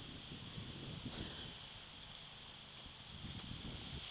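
Wind buffeting the camera microphone in gusts, an uneven low rumble, over a faint steady hiss.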